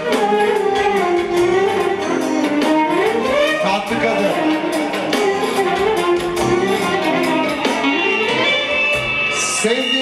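Live band music, an instrumental passage: a lead melody gliding up and down over steady accompaniment.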